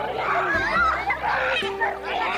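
Children's voices shouting and calling out at play, several at once and overlapping.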